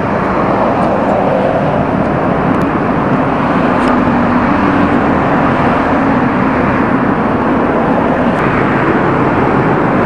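Steady street traffic noise from passing cars, with a faint engine tone rising out of it in the middle.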